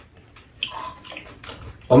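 Wet eating sounds: soup being spooned up and slurped, in a noisy patch lasting just over a second in the middle.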